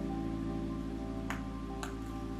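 Soft background guitar music with two sharp clicks about half a second apart, near the middle and end, from a lighter being flicked to light a jar candle.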